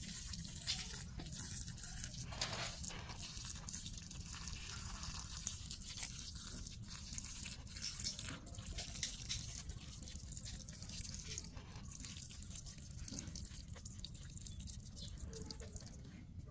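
A thin stream of water splashing onto soil in a plastic pot: a steady hiss of spatter with many quick small splashes, as the soil fills up with water.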